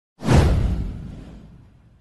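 Intro swoosh sound effect with a deep rumble beneath it. It comes in sharply about a quarter-second in and fades away over about a second and a half.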